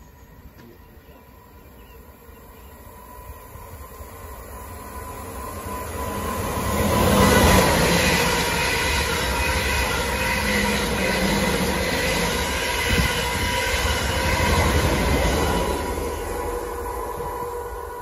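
Two coupled Class 444 Desiro electric multiple units passing at speed: the train noise builds as they approach, is loudest about seven seconds in, holds steady while the carriages go by, and eases off near the end.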